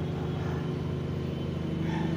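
Steady low mechanical hum of running industrial machinery, even and unchanging.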